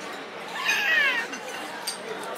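Long noodles being slurped up through pursed lips, making a high whistling squeal that falls in pitch and lasts under a second.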